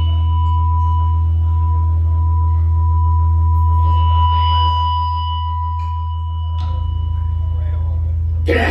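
Sustained drone from the band's amplified gear: a deep, loud hum with a steady high tone held above it. The low part shifts about two-thirds of the way through.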